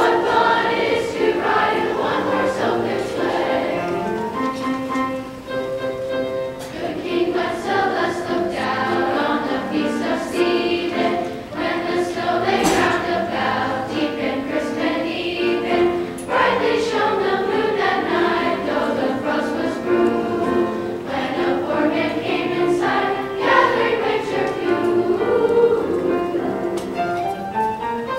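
School chorus singing a song, many voices together.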